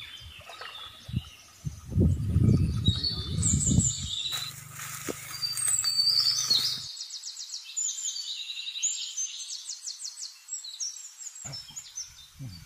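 Small birds chirping and calling, with rapid high trills from about four seconds in. About two to four seconds in, a louder low, rough noise.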